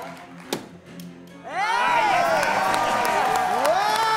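A beer bottle cap popping off with a single sharp click about half a second in, followed about a second later by a studio audience and hosts cheering and whooping, with voices swooping up and down.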